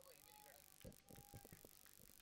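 Near silence: faint outdoor ambience with faint distant voices and a few soft knocks.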